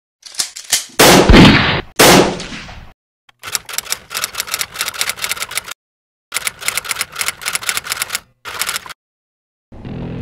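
Edited intro sound effects: a few light clicks, then two loud hits with long fading tails about a second apart, followed by three runs of rapid-fire clatter, each a second or two long, broken by short dead silences.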